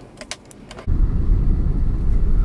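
A few light clicks, then about a second in a sudden start of a car driving: a dense low rumble of engine and tyres on an unpaved road, heard from inside the cabin.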